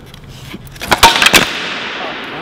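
Prototype carbon-fiber-frame skateboard flipping and landing on a concrete floor: a quick run of sharp clacks and knocks about a second in.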